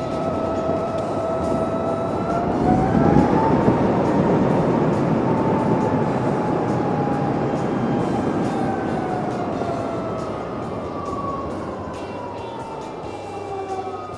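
2020 Harley-Davidson LiveWire electric motorcycle under way: its drivetrain whine rises in pitch over the first few seconds as it accelerates, then slowly falls as it eases off, over wind and tyre rush.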